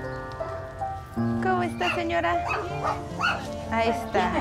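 Background music with long held notes, and from about a second in, a dog barking and yipping repeatedly.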